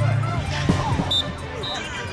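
Distant voices across an open sports field over a steady low hum, with a thud about two-thirds of a second in and two brief high-pitched chirps in the second half.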